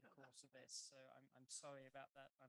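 Faint, indistinct speech.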